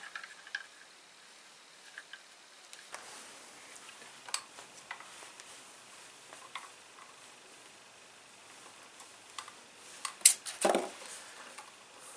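Faint clicks and handling noise as a front sling-swivel bolt is screwed by hand into the fore-end of an airsoft sniper rifle's stock, with a few sharper knocks near the end as the rifle is handled.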